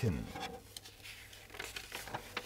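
A paper catalogue page rustling and crinkling as it is turned by hand, with a few soft scattered clicks of handling.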